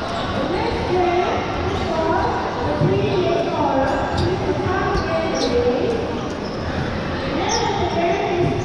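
Rubber dodgeballs bouncing on a hard sports-hall court amid the overlapping chatter and shouts of many players and onlookers, all echoing in a large hall.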